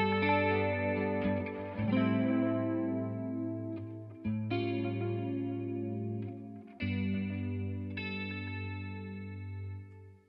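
Electric guitar chords played through a stereo rig with a chorus modulating one side while the other side stays straight. A new chord is struck about every two seconds and each one rings out.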